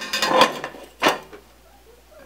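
A thin steel ruler and a sheet of roof flashing being handled on a workbench: a short rattle of thin metal, then a single sharp tap about a second in.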